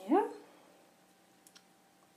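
A woman's voice says "yeah?" with a rising, questioning pitch, then faint room tone with a single soft click about one and a half seconds in.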